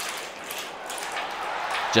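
Marbles rolling along a plastic marble-race track and riding its lift, heard as a steady rolling hiss with faint light clicks.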